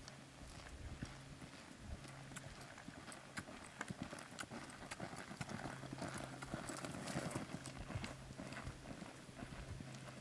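Hoofbeats of a sorrel filly loping on a soft dirt arena, a quick run of muffled strikes that grows louder as the horse passes close, about halfway through, then fades as it moves away.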